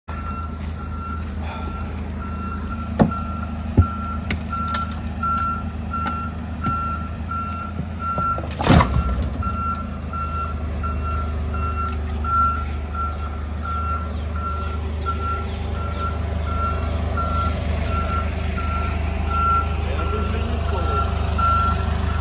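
Forklift reversing alarm beeping in one steady tone at an even rate, over the low rumble of the forklift's idling engine, with a few short knocks.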